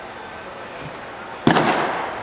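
A pitched baseball landing with a single sharp smack about one and a half seconds in, followed by a short echo in the indoor bullpen.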